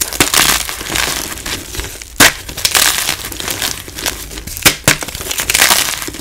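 Blocks of gym chalk (magnesium carbonate) crunching and crumbling as they are squeezed and broken apart by hand. Sharp snaps come as pieces break off, about two seconds in and twice near the five-second mark.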